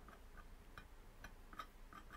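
Near silence with faint, light ticking, about two or three ticks a second.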